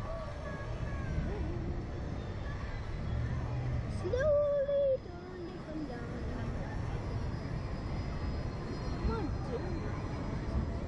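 Wind rumbling over the on-board microphone of a Slingshot ride capsule as it swings on its bungee cords, with faint rider voices. About four seconds in, a rider gives one held vocal call, about a second long, that cuts off suddenly.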